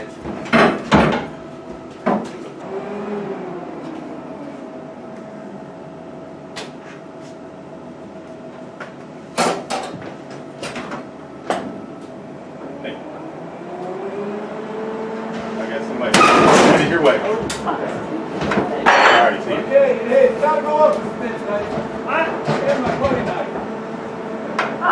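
Metal knocks and clanks on an aircraft's riveted airframe as a crew works the wing box into alignment with the fuselage. A machine whine rises about two-thirds of the way in and then holds steady, and loud clattering follows.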